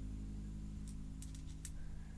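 US one-cent coins clicking faintly against each other as a stack of them is turned in the fingers: a few small clicks in the second half, the sharpest about a second and a half in, over a low steady hum.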